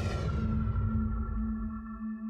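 Electronic sound-design drone: a sustained low hum with steady, ping-like higher tones joining about halfway, over a low rumble, and a falling high-pitched sweep in the first second.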